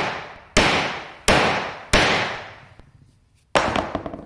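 Steel claw hammer striking a spring-loaded metal tool held against a glued walnut-and-maple block. There are four hard blows, each ringing briefly, with a longer pause before the last. The glue joint does not crack.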